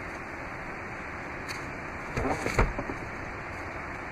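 Third-row seat of a 2017 Chrysler Pacifica dropping into its Stow 'n Go floor well after its release straps are pulled, landing with a short clatter and thud a little past two seconds in, over a steady background hiss.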